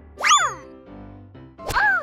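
Cartoon sound effects over soft background music: a quick springy effect with sliding pitch just after the start, then near the end a short knock followed by a brief rising-and-falling voice-like cry.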